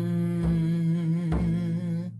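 A woman humming one long, steady note while beating a large hide frame drum with a padded beater, a low drum stroke landing about once a second.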